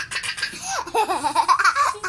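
A young girl laughing hard, high-pitched and in quick repeated bursts, building louder from about half a second in.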